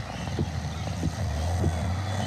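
A steady low hum with a few faint, short low sounds over it.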